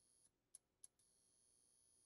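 Near silence: two faint clicks, then a faint steady high-pitched whine from about a second in.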